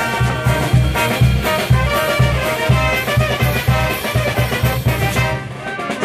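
Brass band (banda filarmónica) playing live: trumpets and trombones over a steady beat of drums and percussion. The sound thins out briefly near the end before the band comes back in.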